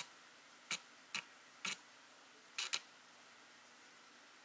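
Camera shutter clicking about six times at uneven intervals, including a quick double click a little past halfway, over a faint steady hiss.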